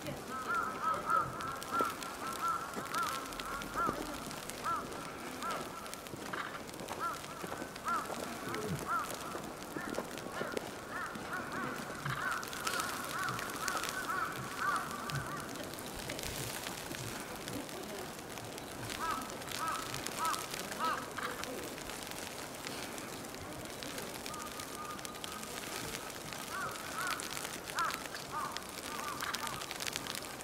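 Birds calling in quick runs of short, honking notes, coming and going in several spells.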